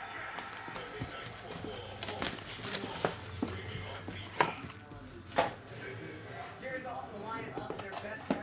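Plastic shrink wrap crinkling as it is peeled off a cardboard trading-card box. Several sharp clicks and taps come from handling the box, the loudest about halfway through.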